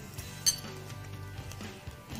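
Soft background music with a single sharp clink of a metal fork against a ceramic bowl about half a second in.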